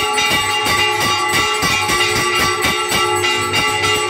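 Bells struck in a rapid, even rhythm of about four strikes a second, their tones ringing on between strikes, as during a temple aarti.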